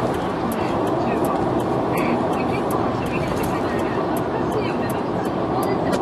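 Steady road and engine noise heard inside a moving car's cabin, with small irregular clicks throughout. Talk-radio speech plays under the noise.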